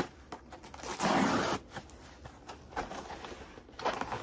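A book-mail package being torn open: one loud tear of packaging about a second in, then light rustling and scraping of the wrapping.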